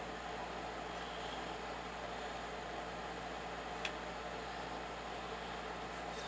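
Steady low hiss of room tone, with one short click about four seconds in.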